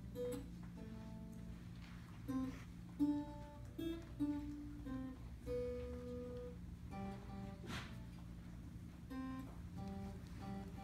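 Acoustic guitar playing a melody of single notes, one after another, over a steady low accompaniment.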